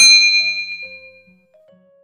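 A bright ding from a notification-bell sound effect that strikes once and rings out, fading over about a second and a half, over soft background music.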